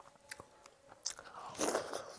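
Close-miked eating sounds of water-soaked rice (panta bhat) eaten by hand: a few small clicks as the fingers work the rice, then a louder burst of chewing and mouth noise near the end as a handful goes into the mouth.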